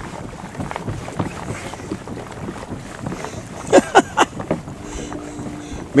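Wind noise on the microphone, with a few short sharp sounds about four seconds in and a brief low hum near the end.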